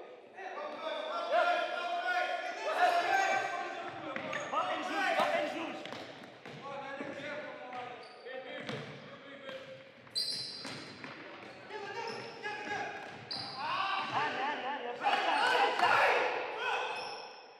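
Futsal ball being kicked and bouncing on a wooden sports-hall floor, with players' voices calling out, echoing in the large hall.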